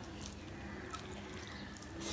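Fingers mixing puffed rice with rice and curry on a steel plate, making a few faint short clicks and crackles.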